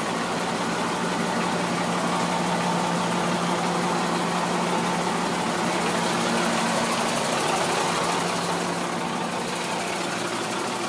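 2001 International 4900 dump truck's diesel engine idling steadily.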